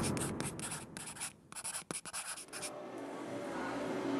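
Pen-scratching sound effect for a cursive logo being written out: a quick, irregular run of scratchy strokes that stops about two and a half seconds in, leaving faint hiss.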